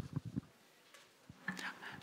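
Faint, murmured speech: a few soft syllables at the start and again near the end, with a quiet pause between.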